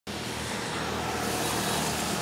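An engine idling steadily, with a hum of road noise around it.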